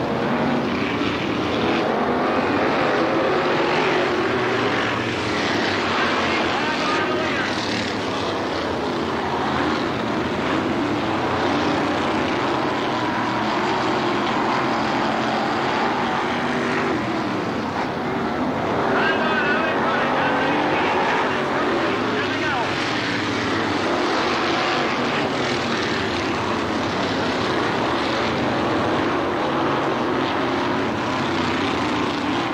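Several dirt-track modified race cars racing around the oval, their engines a loud, continuous blended drone whose pitch wavers as the cars go through the turns and down the straights.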